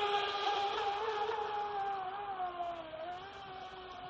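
Feilun FT011 RC speedboat's 4S brushless motor whining at top speed, a steady pitch that dips slightly about three seconds in. The sound fades as the boat runs away into the distance.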